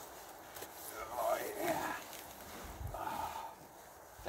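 A man grunting with effort as he lowers himself onto a hanging stick seat, the grunt coming about a second in. A soft low thump follows near three seconds in as he settles onto the seat.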